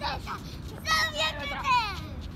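A young child's high-pitched voice calling out without clear words: a couple of drawn-out, gliding vocal sounds starting about a second in, over a low steady background rumble.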